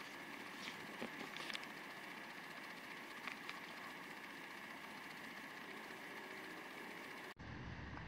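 Faint steady room tone: a low hiss with a faint steady tone in it, broken by a few soft ticks about a second in and again near three seconds.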